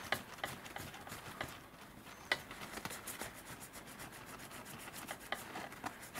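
Kitchen paper towel rubbing against a small copper-plated PLA figure held in the fingers, buffing the fresh copper. It goes as a steady rustle dotted with small crackles, with one sharper click about two seconds in.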